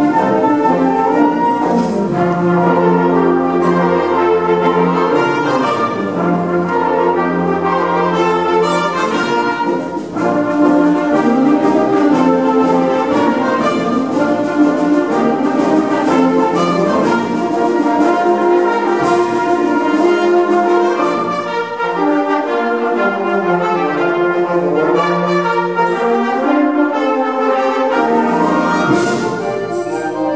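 Live symphonic wind band playing full sustained chords, brass to the fore over clarinets and low brass, with a brief dip in loudness about ten seconds in.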